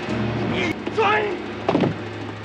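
Film fight sound: a man's yell that slides in pitch about a second in, then a sharp hit as a body is thrown, over a low music score.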